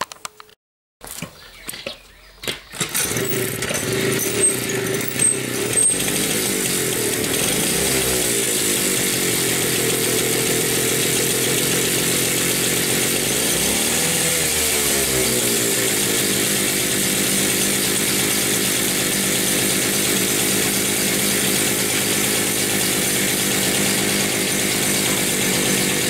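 Jawa Babetta 210 moped's small single-cylinder two-stroke engine running. It comes in about three seconds in, is revved up and down a few times, then settles into a steady idle for the last ten seconds.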